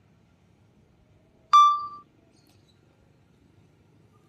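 A single loud electronic beep about a second and a half in: one clear tone that starts sharply and fades away within about half a second.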